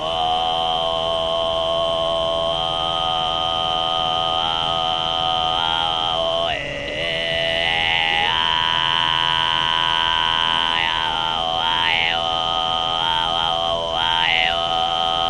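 A woman throat singing: one long, steady drone full of overtones, with a high whistling overtone ringing above it. The drone dips briefly about six and a half seconds in, and in the last few seconds the high overtone moves up and down in a melody.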